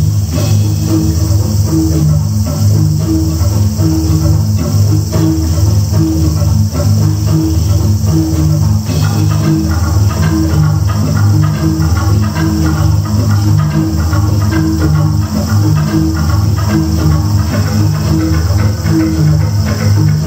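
Live ensemble of Balinese gamelan percussion and an electronic drum kit playing a fast, driving piece of interlocking repeated strokes over deep, booming low notes.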